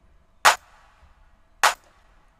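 A trap drum-kit clap sample played twice, about a second apart, each a sharp hit with a short tail.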